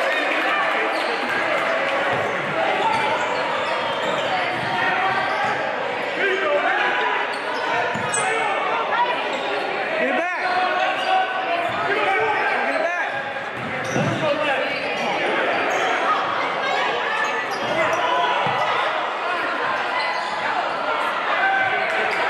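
Basketball being dribbled on a hardwood gym floor amid continuous shouting and chatter from players and spectators, echoing in a large gymnasium.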